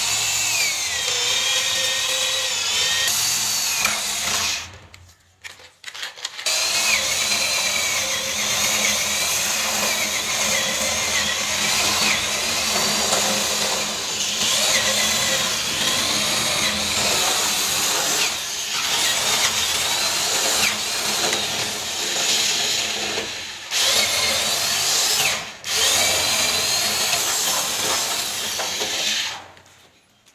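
Corded electric drill boring a row of holes into the edge of a wooden door for a mortise lock pocket, its motor whine sagging and recovering as the bit bites into the wood. It stops for about two seconds early on, pauses briefly twice later, and cuts off just before the end.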